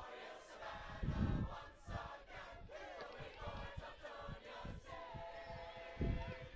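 Game sound of a field hockey match in play: players and onlookers shouting and calling out across the field, in short overlapping calls.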